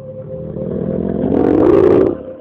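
A rushing noise that swells louder over about two seconds and cuts off abruptly, over soft background music.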